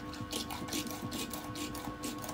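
A VND Racing AK999B1 motorcycle shock absorber being pumped by hand, giving short strokes about twice a second, over steady background music. The rebound damping is at its softest setting, so the shock springs back fast.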